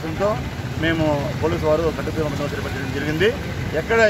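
A man speaking in Telugu, with a low steady rumble of street noise underneath.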